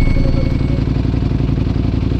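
Ducati Panigale V4 Speciale's V4 engine idling steadily at a standstill, an even low pulsing rumble.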